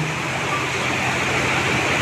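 Steady rushing background noise with no speech: the room tone of a meeting hall.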